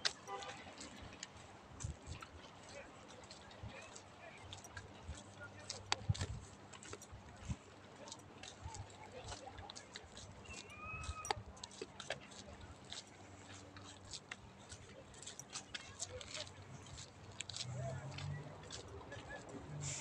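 Irregular clicks and rustles from a handheld phone being carried along a dirt trail, with faint, indistinct voices in the background.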